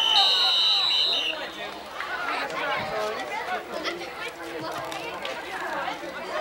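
A referee's whistle blows one steady blast of about a second at the start, as the ballcarrier goes down under a pile of tacklers and the play ends. Spectators' voices and chatter carry on under and after it.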